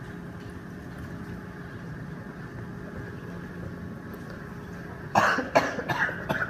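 A person coughing twice in quick succession near the end, over a steady room hum.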